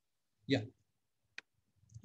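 Near silence broken by one short, faint click about a second and a half in, just after a single spoken "yeah".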